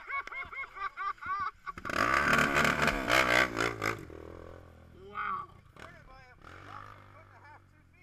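People shouting and yelling over a quad (ATV) engine. The loudest stretch is from about two to four seconds in, when the engine and voices rise together, then both fade.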